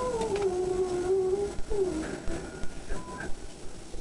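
A drawn-out, voice-like tone that slides down in pitch and holds for about a second and a half, then a second, shorter downward slide.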